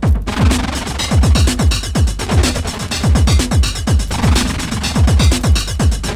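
Electro techno track playing from a vinyl record on a turntable: a fast, even run of drum hits that each drop sharply in pitch, with a hissing wash of noise that comes in at the start.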